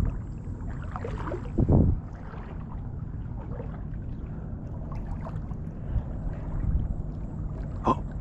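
Shallow water sloshing around the legs of a person wading, over a steady low rumble on the microphone, with one short louder sound a little under two seconds in.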